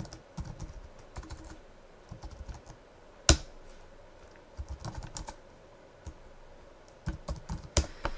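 Computer keyboard typing in irregular bursts of keystrokes with short pauses between them, and one much louder key strike about three seconds in.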